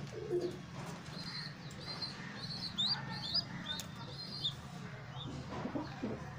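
Young pigeon (squab) peeping: a run of short, high squeaks, roughly three a second, dying away after about four and a half seconds.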